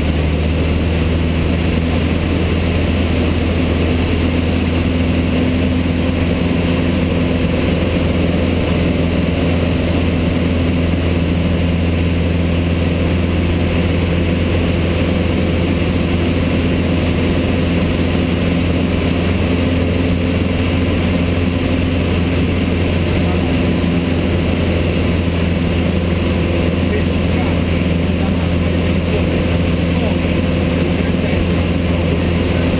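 Single-engine light aircraft's piston engine and propeller droning steadily in flight, heard from inside the cockpit: a loud, even low hum with a few steady pitched tones above it.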